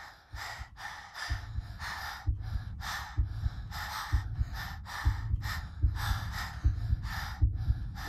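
Quick, shallow nervous breathing, about three breaths a second, over a low, regular pulsing beat: a girl's panic rising as her name approaches in the roll call.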